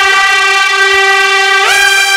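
A loud, sustained horn-like tone from a dramatic music sting, holding one pitch and then stepping up to a higher pitch near the end.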